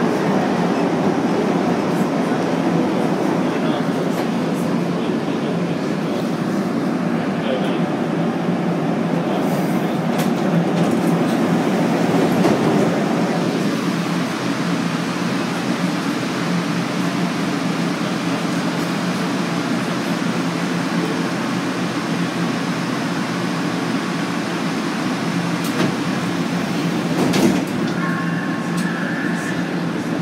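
Interior of a rubber-tyred MR-63 metro car: a heavy rolling rumble as the train brakes into a station, easing about halfway through as it comes to a stop, then the steady hum of the standing train. Near the end comes a sharp knock and a brief two-tone signal as the doors close.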